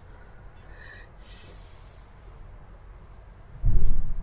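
A sniff through a stuffy nose about a second in, then a short, low thump near the end.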